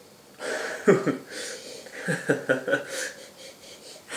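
A man chuckling and sniffing in through his nose over a glass of IPA. A run of short breathy laughs and sniffs starts about half a second in.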